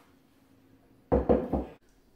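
Three quick, loud knocks on a hard surface about a second in, after a moment of near quiet.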